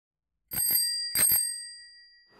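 Bicycle bell rung twice, each ring a quick pair of dings, the metallic ringing fading away after the second.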